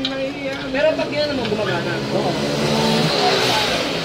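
Cordless drill driving a screw into a motorcycle top-box base plate, its whir coming up about halfway through under people talking.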